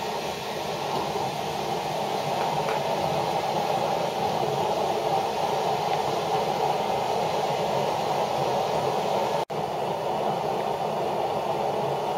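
Boilex Ultraclean 1 stove with its fan turned up to maximum, a steady rushing noise of the fan-forced flame burning methyl ester fuel blocks under a large pot of heating water. The stove's noise is the sign of its burning power: a slight fall in it has just called for a fresh fuel block. A momentary break in the sound comes about three-quarters of the way through.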